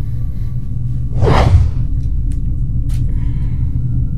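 Low, steady rumbling drone of a horror film soundtrack, with a single whoosh sound effect sweeping through about a second in.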